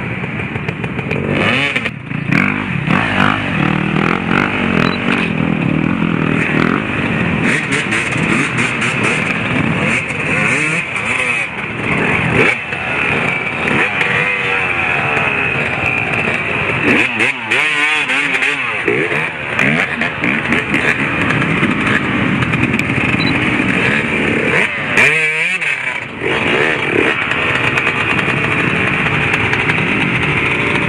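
Several off-road motorcycle engines revving hard, their pitch rising and falling again and again under heavy throttle as the bikes are forced up a steep, muddy hill climb.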